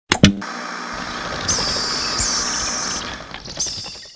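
Intro sound effects: two sharp hits, then a steady noisy hiss with three short high-pitched chirps over it, fading out near the end.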